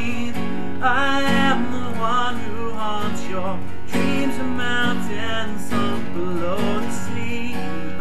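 Acoustic guitar with a capo, chords strummed steadily, with a singing voice carrying wavering held notes over it in places.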